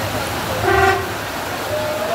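A single short car horn toot, about a third of a second long, a little over half a second in, over the steady rush of floodwater running down the street.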